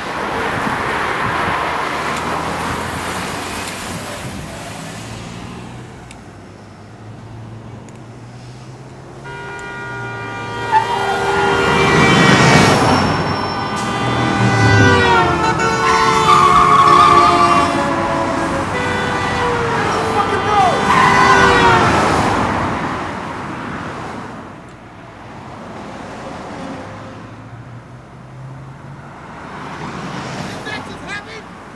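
Cars driving past on a street, and from about nine seconds in several car horns sounding long, overlapping blasts at different pitches for over ten seconds, some dropping in pitch as the cars pass.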